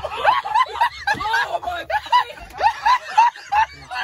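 People laughing hard inside a moving car, short bursts of high laughter one after another, over the car's low steady road hum.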